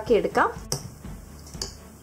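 A woman's voice briefly, then a single sharp click and faint sounds of a spoon stirring thick pancake batter in a glass bowl.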